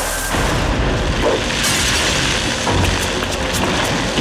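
Cartoon explosion sound effect: a boom followed by a long, loud, noisy rumble, with dramatic soundtrack music underneath.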